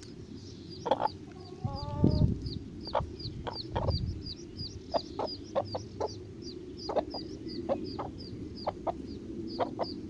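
Hens clucking in short low notes while a duckling peeps steadily, high and quick, about three peeps a second. About two seconds in, a longer, drawn-out call stands out.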